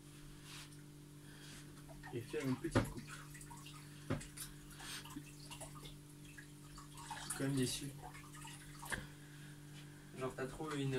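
Water running and splashing faintly at a kitchen sink, with a couple of sharp clinks, over a steady low hum; a few brief murmured words.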